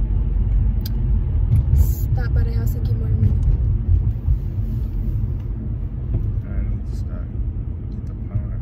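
Steady low rumble of road and engine noise inside a moving car's cabin, with a few sharp clicks about one and two seconds in.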